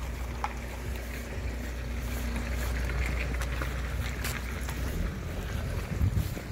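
Wind rumbling on the microphone outdoors, a steady low buffeting with a few faint clicks; the rumble eases off about five seconds in.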